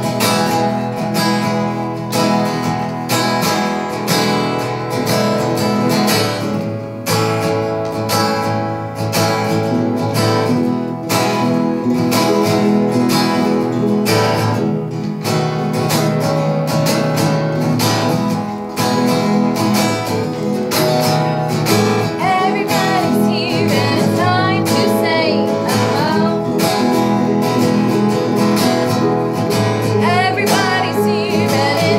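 Acoustic guitar strummed steadily in regular strokes throughout. A voice joins in singing about two-thirds of the way through.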